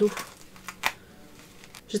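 A plush fabric headband being stretched and pulled on over hair: a few brief soft rustles and brushes, the clearest just under a second in.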